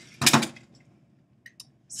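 A short clatter of a plastic toy pull-back car and a plastic cup knocking against a stainless-steel table top, as the car strikes and shoves the cup. It comes just after the start, then it is quiet apart from two faint ticks.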